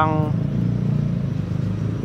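Road traffic: a steady low rumble of vehicle engines and tyres, swelling a little about half a second to a second and a half in.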